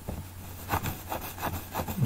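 Several faint scraping strokes in quick succession, starting a little before halfway through.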